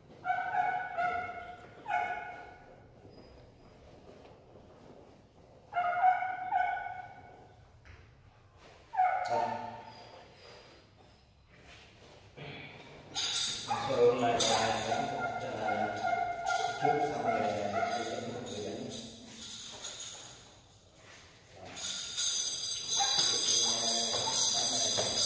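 A few short voice calls, each about half a second long and a few seconds apart, then a longer stretch of voice and music from about halfway through. Near the end, loud, bright, jingling percussive music comes in.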